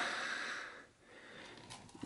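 Soft breath noise: a faint exhale trailing off, a brief hush, then a quiet breath in, with a couple of faint clicks near the end.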